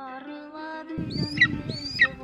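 Music with held notes, joined about a second in by an outdoor rumble and two high, sharp bird-of-prey calls, each rising and then falling. The calls likely come from a hunting golden eagle.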